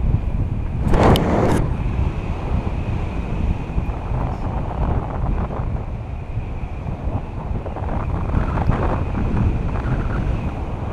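Airflow buffeting the camera microphone during a tandem paragliding flight: a steady, loud wind rumble with a louder rush about a second in.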